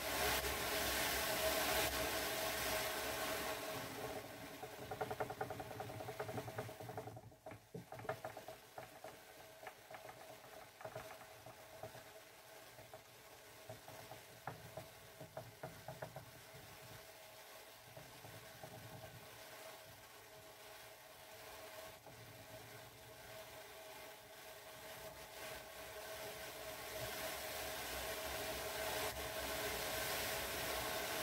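Hand-cranked Ashford drum carder, its wire-clothed drums whirring as they turn with merino fibre on them, over a steady hum. The whirring is loud at first, fades to a quieter turning with small clicks through the middle, and builds again as the cranking speeds up near the end.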